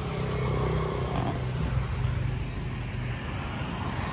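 A motorcycle engine idling steadily: a low, even hum with no revving.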